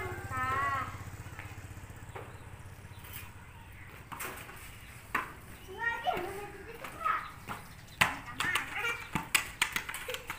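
Children calling out and shouting while playing, in short bursts, with a string of sharp knocks in the last two seconds.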